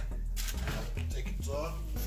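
Metal baking tray slid out of an electric oven along its wire rack, a light scraping over a steady low hum, with a voice faintly in the background near the end.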